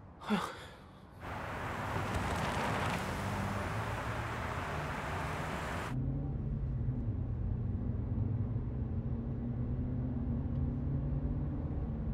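A short sigh just after the start. Then a loud rushing noise for about five seconds, which cuts off abruptly, and after it the steady low drone of a car running, heard from inside the cabin.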